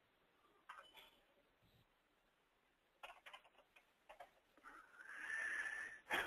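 Faint computer keyboard keystrokes as text is typed into a field: a click about a second in, then a quick run of key clicks around the middle. A steadier sound swells near the end and is louder than the clicks.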